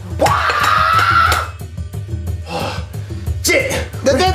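A person's drawn-out cry, held at one pitch for about a second at the start, over background music; shorter vocal sounds come near the end.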